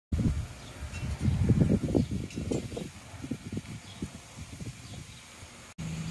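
Wind buffeting an outdoor microphone: irregular gusty low rumbling that cuts off abruptly just before the end.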